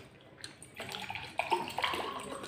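Fingers squishing and mixing rice with curry on a plate: irregular wet, crackling sounds that get louder just under a second in.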